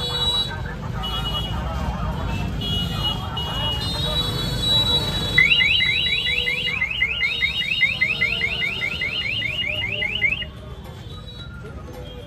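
An electronic alarm chirping rapidly, about six short rising chirps a second for some five seconds before it stops suddenly, over the hubbub of a busy street market.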